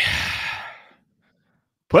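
A man's exasperated sigh into a close microphone: one breathy exhale lasting just under a second and fading away.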